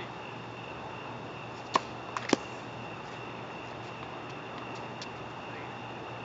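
Tennis ball knocks on an outdoor hard court: three sharp pops close together about two seconds in, the last the loudest, then a few faint ticks, over a steady high-pitched hum.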